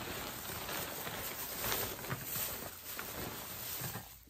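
Plastic bag rustling and crinkling as it is handled and pulled open to unwrap an item, a continuous crackly rustle.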